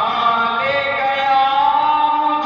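A man chanting a devotional poem into a microphone in long, held melodic notes; his pitch slides down near the start, then settles on a steady held note.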